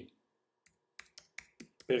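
Computer keyboard being typed on: about seven or eight separate short keystrokes, unevenly spaced and coming faster near the end.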